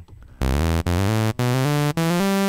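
Native Instruments Massive software synthesizer playing a raw sawtooth tone: a run of held notes, each a step higher than the last with a brief gap between them, starting about half a second in. With linear key tracking switched on, the pitch follows each key played.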